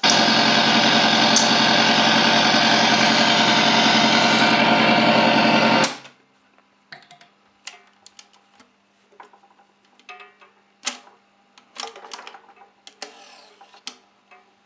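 Yugdon radiogram's exposed turntable drive, platter off, running with a loud steady mechanical buzz that stops abruptly about six seconds in. Then come scattered light clicks and knocks as the rubber idler wheel is handled.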